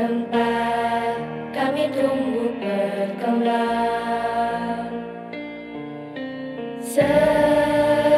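A slow song sung in Indonesian over instrumental accompaniment, with long held notes. It swells louder about a second before the end.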